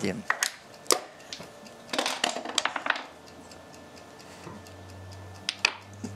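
Backgammon checkers clicking sharply as they are set down on the board, several clicks in the first couple of seconds and a couple more near the end.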